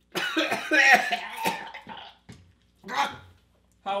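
A man coughing and sputtering, a harsh run of coughs for about two seconds and then one more cough about a second later, from choking on a gulped drink of raw egg and scotch.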